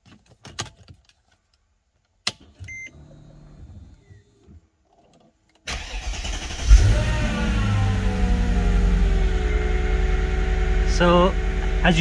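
Mercedes CLK500's M113 V8 being started: a few clicks and a short beep as the ignition comes on, then the starter cranks about five and a half seconds in and the engine catches, its revs falling from the start-up flare to a steady idle.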